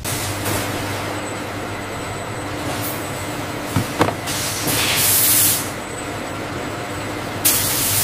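Handheld wig steamer hissing steadily, with two louder bursts of steam: one about five seconds in and one near the end.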